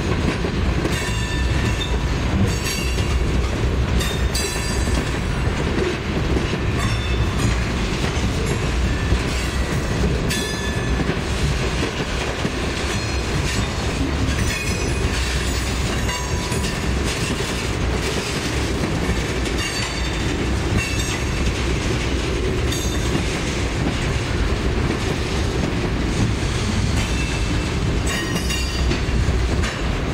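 Tank cars of a Norfolk Southern freight train rolling steadily past close by: a continuous heavy rumble of steel wheels on rail, broken by irregular sharp clacks as the wheels cross rail joints.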